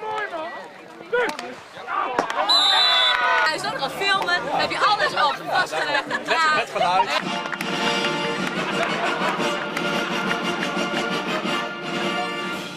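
Several people's voices talking and calling out over one another, then music takes over about seven seconds in and runs steadily on.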